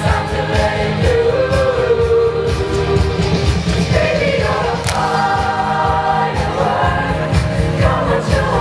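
High-school chamber choir singing a pop song in parts, the voices in harmony over a steady low beat.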